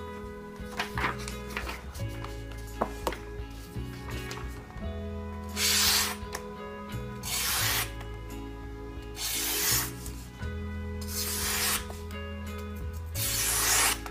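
Paper being sliced by a steel cleaver in a sharpness test. Starting about five seconds in, there are five swishing cuts, each about half a second long and roughly two seconds apart, with the last one the loudest. Background music plays throughout.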